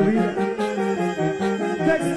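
Banda music in an instrumental passage: a brass section carrying the melody over a steady, repeating low bass line.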